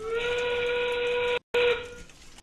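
A recorded steam-train whistle from the competition field's sound system: one loud, steady note with overtones. It briefly drops out about one and a half seconds in and then resumes for a moment. It is the signal that the match's 30-second endgame has begun.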